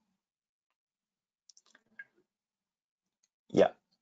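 Near silence from a gated microphone, broken by a few faint clicks about one and a half to two seconds in. A short spoken "yeah" comes near the end.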